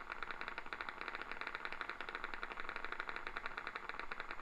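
Single-fibre EMG audio from the machine's loudspeaker: sharp clicks in a fast, even train, about a dozen a second. It is a single motor unit firing steadily under a slight voluntary contraction, with the needle electrode at a good recording position.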